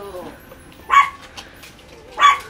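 A small Chihuahua–Papillon mix dog gives a single short, sharp bark about a second in.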